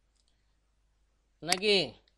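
Near silence for over a second, then a person's voice speaks briefly near the end, with one sharp click as it begins.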